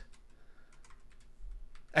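Computer keyboard typing: several light keystrokes, irregularly spaced.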